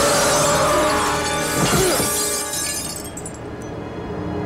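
A car window shatters, glass crashing and spraying for about two seconds before dying away, over dramatic film score music.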